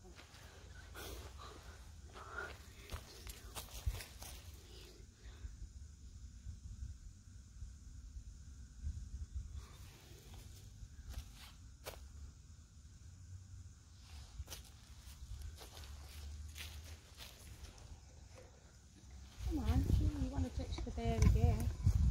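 Low rumble of wind on the microphone with scattered small clicks and rustles in the woodland. Voices and footsteps on dry leaf litter come in loudly over the last couple of seconds.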